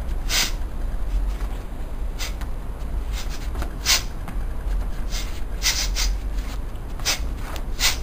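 A person's short, sharp exhalations, hissed out with each front kick: about seven bursts a second or two apart, some in quick pairs, over a steady low rumble.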